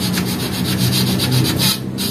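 A thin metal rod scraped rapidly in and out of the tube openings of a radiator core with its top tank removed, about seven strokes a second, rodding out dirt that clogs the tubes. A steady low hum runs underneath.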